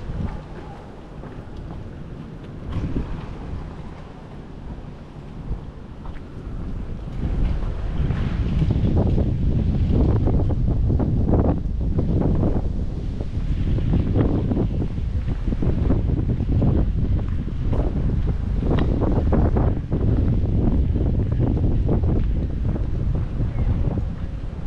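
Wind buffeting the camera microphone outdoors, a low rumbling noise with irregular gusts. It gets much louder about seven seconds in and stays loud.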